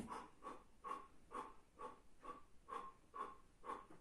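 A man's short, rhythmic breaths, about two a second, from the effort of holding a prone superman position while making small flutter kicks.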